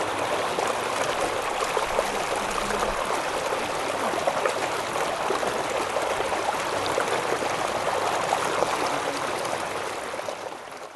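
Water running steadily out of a hand-dug irrigation tunnel along a small, shallow channel and into a pond, a continuous babbling flow.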